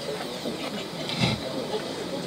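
Faint voices and room noise picked up through a microphone and PA, with a brief louder sound about a second in.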